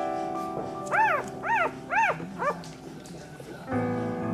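Newborn Staffordshire puppy squealing: four short high cries, each rising and falling in pitch, about half a second apart, over soft background piano music.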